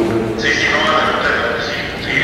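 People talking around a meeting table. About half a second in, a higher-pitched voice comes in over the lower talk.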